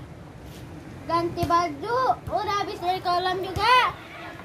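Speech: a boy's high voice in short phrases, starting about a second in.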